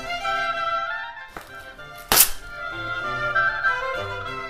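Classical chamber-orchestra music, strings holding sustained chords. About a second and a half in the music thins out, then a brief loud burst of noise comes just after two seconds before the chords return.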